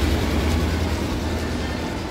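A passing vehicle's low rumble with a hiss over it, slowly fading.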